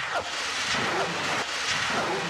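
A loud, steady rushing roar that comes in suddenly and holds even, with no distinct strikes or rhythm.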